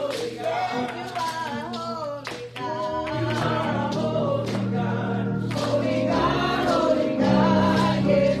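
Gospel worship music with several voices singing together. Hand claps keep time, and steady bass notes enter about three seconds in.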